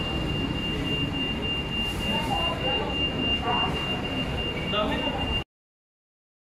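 Fast-food restaurant dining-room noise with faint voices and a steady high-pitched electronic tone, cutting off suddenly near the end.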